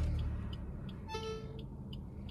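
Maruti Suzuki Baleno petrol engine starting up, its low rumble dying down within the first second into a quiet, steady idle heard from inside the cabin. A short electronic chime sounds a little after a second in.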